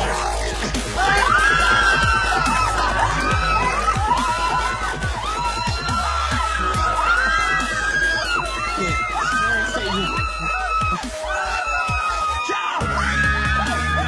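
Several people screaming and yelling in overlapping shouts over a music track with a steady low bass drone; the bass drops out briefly near the end.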